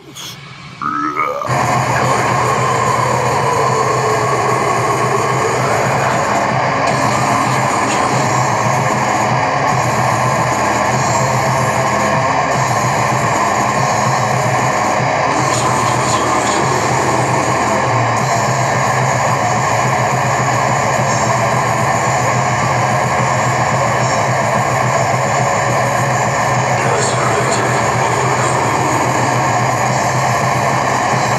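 Loud raw extreme metal music playing as a dense, unbroken wall of sound. It cuts in abruptly about a second and a half in, right after a short gasp.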